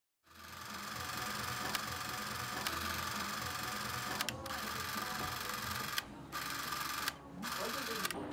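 A small motor whirring steadily with hiss and a few clicks, starting just after the beginning and cutting out briefly about six and seven seconds in.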